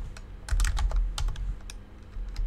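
Typing on a computer keyboard: an uneven run of key clicks as a string of digits is entered.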